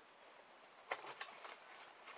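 Faint handling of a small white cardboard cube box: a sharp tap about a second in, then a couple of lighter clicks, as the box is handled to be opened.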